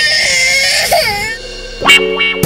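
A young child crying in a high, wavering wail for about the first second and a half, over background music. Just before the end there is a sudden loud musical hit.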